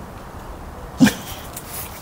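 A dog makes one short, sharp vocal sound about a second in.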